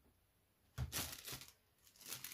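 A piece of thin nail-art transfer foil being handled, a rustle of many small crackles lasting under a second in the middle, with near silence before it.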